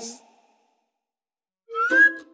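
The tail of a closing music sting fades out, followed by about a second of silence. Near the end, playful children's music starts with a rising whistle-like glide over a steady low note.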